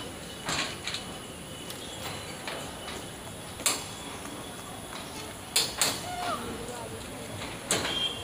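Indian Railways passenger coaches rolling slowly past, with occasional sharp clacks of the wheels over rail joints, one of them a quick double clack, over a steady hiss.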